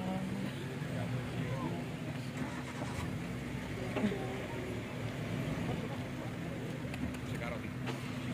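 Engine of an open safari jeep running steadily at low revs, with people talking in the background.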